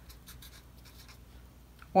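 Marker pen writing on paper: faint, short scratching strokes as a word is written out.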